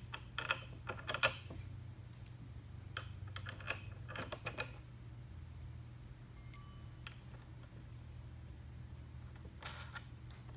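Loose metal bolts, nuts and washers clinking and clicking against each other and the ski's bracket as hardware is handled and fitted, with a run of clinks in the first five seconds and a lone ringing clink about six and a half seconds in. A low steady hum runs underneath.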